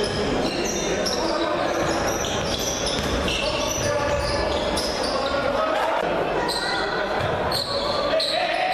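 Live basketball game sound on a hardwood court in a large echoing hall: the ball bouncing, many short high sneaker squeaks, and unintelligible voices of players and spectators.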